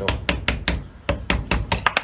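Small hammer tapping a very small chisel against a green resin knife handle in a vise, about six or seven quick, uneven taps a second, chipping the broken handle off the knife.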